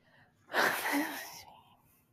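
A person's single short, breathy burst of breath, with a brief voiced bit, fading out over about a second.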